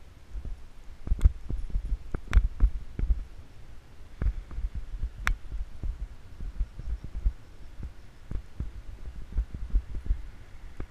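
Irregular low rumbling and thumping of wind buffeting and road bumps on an action camera mounted on a moving bicycle. A few sharp knocks or rattles come through, about one and two seconds in and again near the middle.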